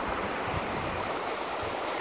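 Shallow, fast stream rushing and splashing over rocks, a steady even rush of water.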